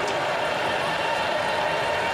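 Steady stadium crowd noise at a college football game, an even murmur with no single shout, whistle or hit standing out.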